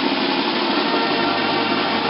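Banda percussion holding a dense, steady wash: a snare drum roll under ringing clash cymbals, with the brass almost dropped out.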